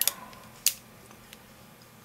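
Handling noise from a Colt Frontier Scout .22 single-action revolver being turned over in the hands: a sharp click at the start, a second sharp click about two-thirds of a second later, then a faint tick.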